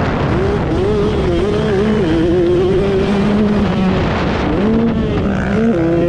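KTM 125SX single-cylinder two-stroke motocross engine running hard at high revs, its note wavering up and down with the throttle over a steady rush of noise. The note dips about four and a half seconds in, then climbs again.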